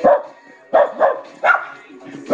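A dog barking: four short barks in quick succession.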